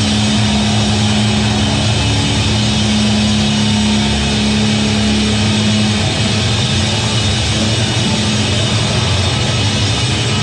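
Heavy metal band playing live: distorted guitars and bass with a drum kit, a low note held for about the first six seconds before the riff moves on.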